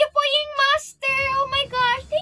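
A high female voice singing a few short held notes with vibrato.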